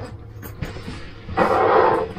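A padded nylon backpack being handled: a short scratchy rustle of about half a second near the end is the loudest sound.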